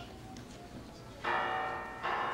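Mobile phone ringtone of pealing bells, starting about a second in, with loud bell strokes coming a little under a second apart.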